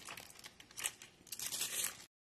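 A clear plastic bag crinkling and rustling in a hand, in irregular crackly bursts that grow louder in the second half.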